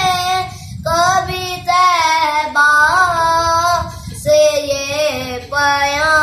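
A boy singing a naat, an Urdu devotional poem in praise of the Prophet, solo, in long held phrases with wavering, ornamented pitch and short breaks for breath between them.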